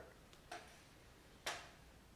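Quiet room tone with two short, sharp clicks about a second apart.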